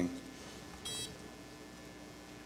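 A single short, high electronic beep about a second in from a contactless card reader as a test card is tapped on it, the reader picking up the card.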